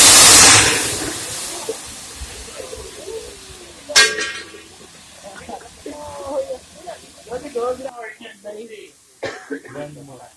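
Grease fire erupting into a fireball as water hits burning cooking grease: a loud rushing whoosh of flame that dies away over the first two seconds.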